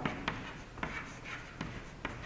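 Chalk writing on a chalkboard: faint scratching strokes with a few short, sharp taps of the chalk against the board.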